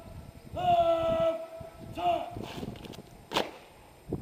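Shouted, drawn-out drill words of command to a parade of RAF personnel, each call held long on one pitch. A single sharp crack comes near the end.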